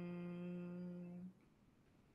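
A voice holding a long, steady hum, the drawn-out closing 'mmm' of a chanted om. It fades a little and stops abruptly just over a second in, leaving near silence.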